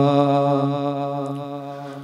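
Men singing a devotional madh, holding one long sung note at the end of a line of the praise song. The note wavers slightly and slowly fades away.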